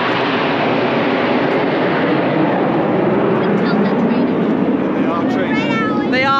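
Formation of jet aircraft passing overhead, the Red Arrows' BAE Hawk jets: loud, steady jet noise with no break.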